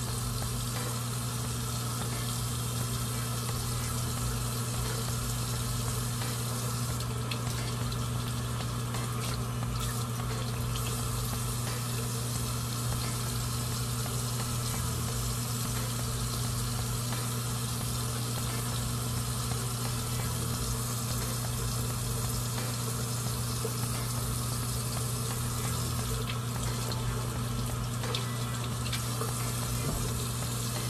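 Bathroom tap left running: a steady, unbroken rush of water with a low hum beneath it.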